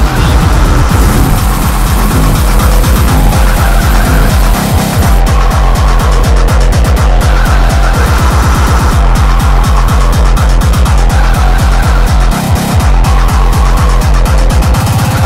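Splittercore electronic music: distorted kick drums hammering so fast they blur into a continuous buzz, with stepped synth pitches above and a high thin tone during the first few seconds.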